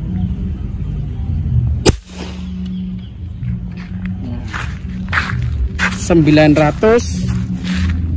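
A single shot from a Pasopati AK Mini Lipat semi-PCP air rifle: one sharp crack about two seconds in.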